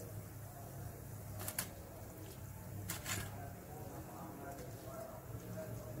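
Faint handling noise of a sticky snail-egg bait mash being placed into a metal bowl by hand: a couple of short clicks or taps, about a second and a half apart, over a low steady hum.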